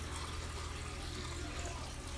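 Steady sound of circulating water from a saltwater reef aquarium, with a low, even hum from its pumps underneath.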